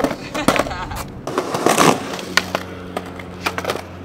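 Skateboard deck and wheels hitting concrete again and again: sharp pops, clacks and landings from street-trick attempts off a broken slab. A low steady hum comes in about halfway through.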